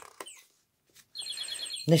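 Paper pages of a handmade journal being handled and turned: a light tap near the start, then a high scraping rasp of paper sliding over paper, lasting just under a second, starting past halfway.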